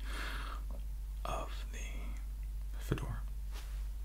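A man whispering softly in short phrases, with a light click about three seconds in.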